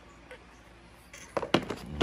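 Quiet for about the first second, then a few sharp clicks and knocks of metal hand tools (a socket ratchet and sockets) being handled against a plastic tool case tray.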